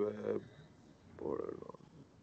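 A brief, soft chuckle a little over a second in, after a spoken word trails off.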